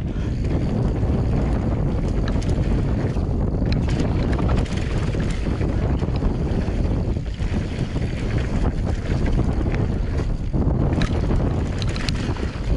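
Wind rushing over the action camera's microphone and tyres rolling on a dry dirt trail as a prototype Forestal electric mountain bike descends. Occasional short clicks and rattles come from the bike.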